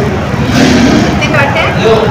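Indistinct background voices over steady low room noise in a busy restaurant.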